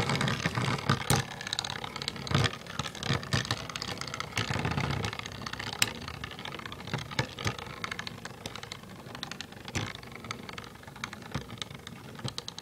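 Two Beyblade spinning tops, Earth Eagle and L-Drago, whirring as they spin in a plastic stadium, with many sharp clicks as they knock into each other. The sound grows gradually fainter.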